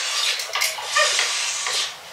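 Fingers rubbing through damp hair close to the microphone: a steady, hissy rustle.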